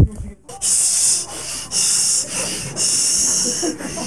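Handling noise on a phone's microphone: a thump as it is grabbed, then hissing rubs against the mic that come and go about once a second.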